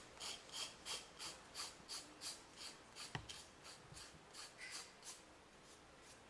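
A professional-grade acrylic nail file rasping back and forth along the edge of a wooden shape covered in Mod Podge-glued paper, sanding the excess paper flush with the wood. The strokes are faint and regular, about three a second, and fade after about four seconds, with a single sharp click about three seconds in.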